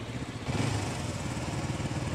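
Auto rickshaw's small engine running with a rapid, steady putter, growing louder about half a second in.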